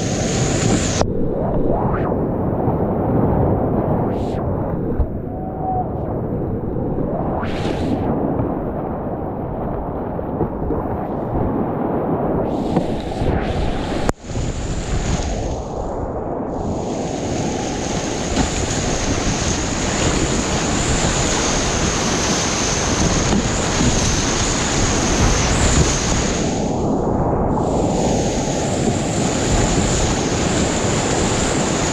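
Whitewater rapids rushing loudly and steadily around a kayak, heard close up from the boat. The sound is duller for the first half, drops out for an instant about halfway through, and is brighter after that.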